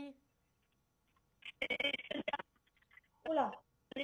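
A caller's voice coming through a telephone line, brief, thin and hard to make out, in the middle of a sound problem on the call; near the end a woman says a short 'oh'.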